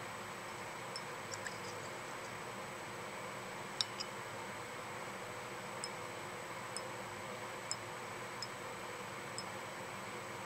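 Steady low hum and hiss of room ventilation, with faint light ticks scattered irregularly through it, the sharpest about four seconds in.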